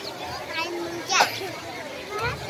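Children's voices and chatter outdoors, with one brief high-pitched child's cry about a second in.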